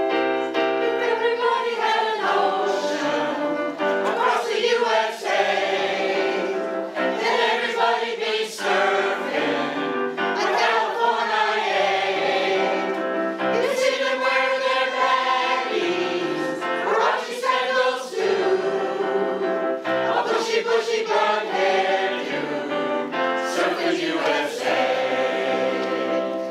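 Mixed-voice choir singing in harmony, accompanied by a digital piano.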